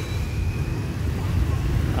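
Steady low rumble of motorbike and scooter traffic on a busy street, with a scooter passing close by.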